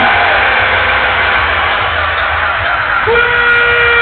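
Loud electronic dance music over a big sound system, recorded from inside the crowd. A held synth note falls away at the start, and a new long held note comes in about three seconds in.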